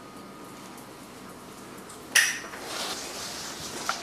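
Quiet room, then about halfway through a sudden loud clatter followed by about a second and a half of rustling, and a short sharp click just before the end.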